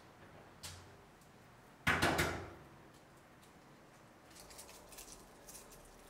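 A short, sharp bang about two seconds in, made of a few quick knocks close together, with a single click a little before it and faint scattered clicks near the end.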